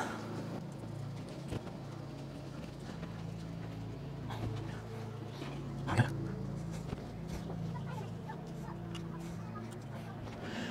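A steady low hum with a few faint, light knocks as the bare engine block and loose gasket are handled on the bench.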